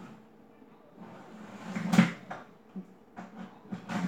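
A household knock or bang about halfway through, followed by a few lighter clicks and knocks near the end.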